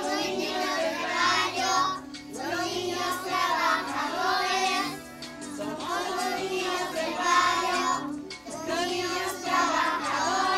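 A group of young children singing a song together, in phrases of about three seconds with short breaths between them.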